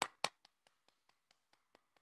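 Hand clapping, faint: a few sharp claps at the start, then quicker, fainter ones at about six a second that die away.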